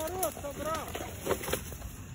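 A raised, indistinct voice calling out at a distance, with a few sharp snaps of twigs and leaf litter as someone walks through forest undergrowth.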